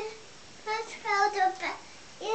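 A toddler's high voice, sing-song vocalising without clear words in a few short phrases through the second half.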